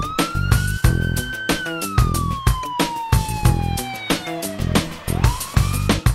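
Police siren wail over music with a steady drum beat: the siren rises, holds, falls slowly, and starts rising again near the end.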